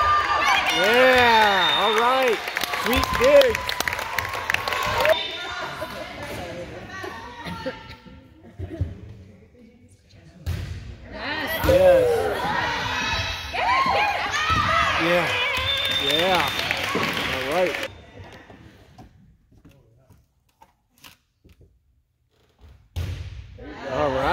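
Girls' voices shouting and cheering in a large echoing gym during youth volleyball rallies, several voices rising and falling over one another in two bursts, with scattered thuds of the ball. The sound drops almost to silence for a few seconds near the end.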